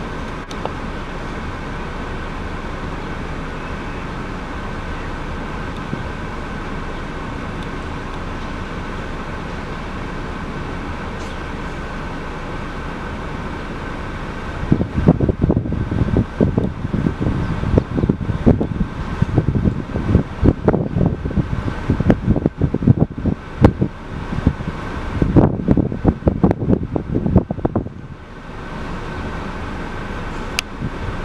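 A steady mechanical hum, like an idling engine, runs throughout. From about halfway through until near the end, loud irregular gusts of wind buffet the microphone.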